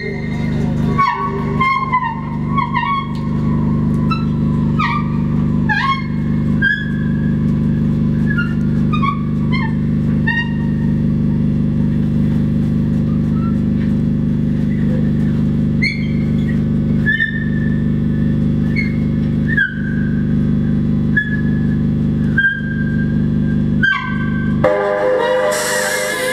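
Tenor saxophone playing a string of short, high notes that bend up or down in pitch, about one a second, over a steady low electronic drone. Near the end the drone cuts out and a denser electronic texture takes over.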